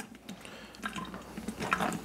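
Silicone spatula pushing blended tomato soup through a fine-mesh metal strainer: faint wet squishing and scraping against the mesh, with a few light ticks.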